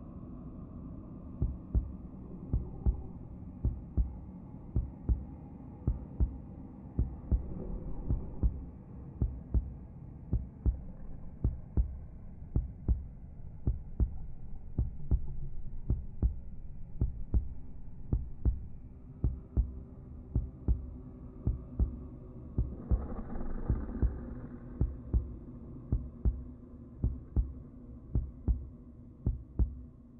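Heartbeat sound effect: a regular pulse of low double thumps over a low, steady drone, with a brief swell of noise about twenty-three seconds in.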